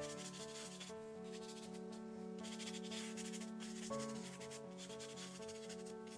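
A watercolour brush rubbing across paper in three scratchy strokes, each about a second long, over background music with held notes.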